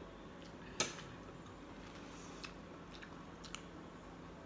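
A metal fork clicking against a plate: one sharp click about a second in, then a few fainter ones, over quiet chewing.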